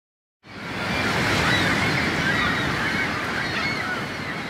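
Surf washing onto a shore, with birds calling faintly over it; the sound fades in about half a second in and then eases off slowly.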